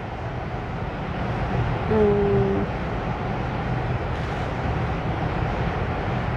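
Steady background room noise, an even low rumble with hiss above it. About two seconds in, a woman gives a short 'mm' while she thinks.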